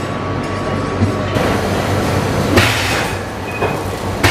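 Steady background noise of a busy market with a low hum. A cleaver chops pork on a wooden board about a second in, and another sharp knock follows a little later.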